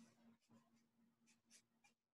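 Near silence: faint room tone with a low steady hum and a few faint, short scratchy strokes.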